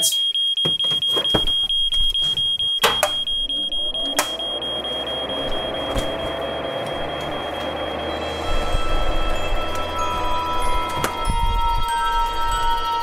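Smoke alarm sounding with a high, rapidly pulsing beep over the sizzle of a frying pan, with a couple of sharp clanks; the alarm has been set off by cooking. About two thirds of the way through, soft chiming mallet-percussion music comes in.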